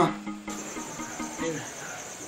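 Crickets trilling steadily in a high, fast-pulsing chirr that starts about half a second in, over soft background music with held low notes.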